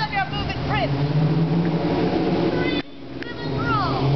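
Short high-pitched yelps and cries from people in a staged squirt-gun fight, over a steady low hum.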